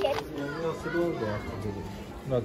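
People talking, a child's voice among them, in words too indistinct to make out.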